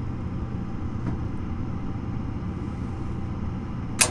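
Gas furnace's draft inducer motor running with a steady hum while the hot surface igniter heats up. Right at the end a sharp click: the gas valve opening to let gas to the burners.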